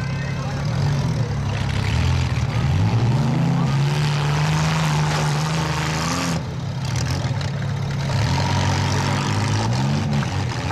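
Demolition-derby compact car engines revving hard. One engine climbs in pitch about three seconds in, holds a steady high note for a few seconds, then drops back, and revs up again near the end.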